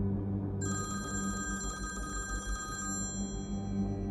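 Smartphone ringing with an incoming call: one ring of about two seconds, starting just over half a second in, as a set of steady high tones.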